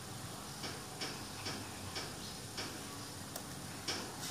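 Light, sharp ticks, about two a second at slightly uneven spacing, over a steady background hiss.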